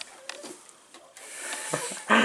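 Quiet rustling and a few light clicks of a hand rummaging in a metal hen nest box while gathering eggs; the rustle grows louder in the second half.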